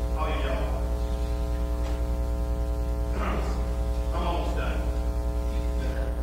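Steady electrical mains hum with a buzzy stack of overtones, loud throughout. Faint murmured words come through about three seconds in and again a second later.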